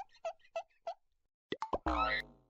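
Edited-in cartoon sound effects: four quick bloops in the first second, then a few sharp clicks and a short ringing tone near the end, with dead silence between them.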